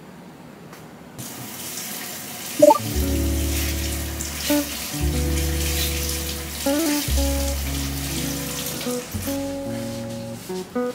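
A steady water hiss comes in about a second in and runs on, with soft background music of bass notes and held chords starting about three seconds in.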